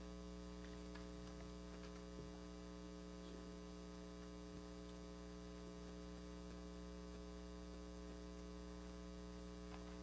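Steady low electrical mains hum on the audio feed, unchanging throughout.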